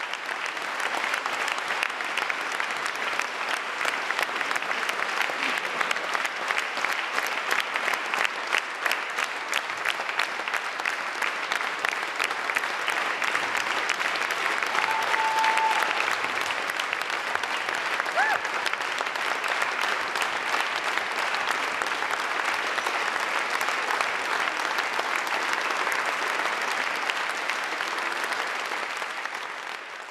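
A church audience applauding: steady, dense clapping of many hands that fades away at the end.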